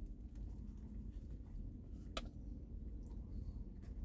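Faint mouth sounds of biting into and chewing a soft meatball sub, with small wet ticks, over a low steady hum. A single sharp click comes about two seconds in.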